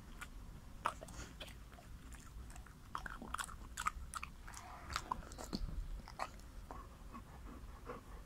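Golden retriever chewing a fig: irregular wet mouth clicks and smacks, busiest in the middle few seconds.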